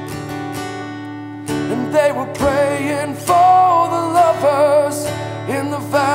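Acoustic guitar strummed under a man singing a country song, his held notes wavering with vibrato. For about the first second and a half the guitar rings alone before the voice comes in.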